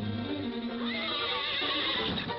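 Orchestral cartoon score, with a horse whinnying: a high, wavering call that comes in about a second in.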